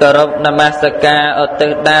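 A Buddhist monk chanting Pali verses in a sung recitation, each syllable held on a level note before stepping to the next.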